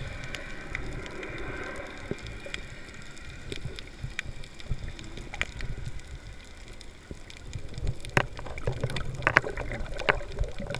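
Underwater sound picked up by a submerged camera: a muffled low rumble of moving water with scattered clicks and pops, which grow busier near the end.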